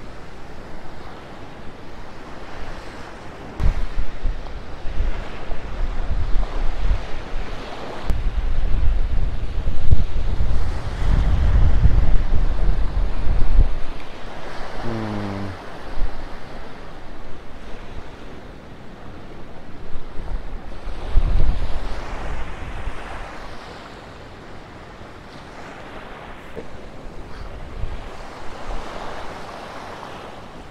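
Surf washing up a sandy beach, with gusts of wind buffeting the microphone, heaviest from about a quarter to halfway through. A brief falling tone sounds about halfway through.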